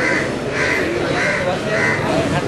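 Crow cawing repeatedly, four caws about half a second apart, with faint voices underneath.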